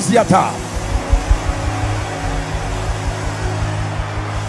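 Sustained keyboard chords with irregular low bass thumps, over a steady wash of voices from a large congregation. A man's shouted voice is heard briefly at the start.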